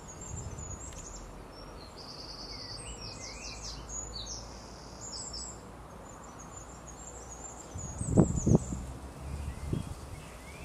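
Small garden birds chirping, with short high repeated notes and trills, over a steady low background rumble. About eight seconds in, two or three brief low thumps stand out as the loudest sounds.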